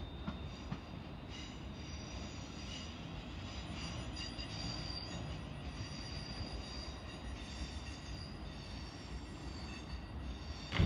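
A Class 350 Desiro electric multiple unit pulling away into the distance: a steady rumble, with high-pitched squealing tones that come and go.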